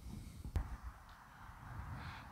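A quiet pause with a faint low background rumble and hiss, and one sharp click about half a second in.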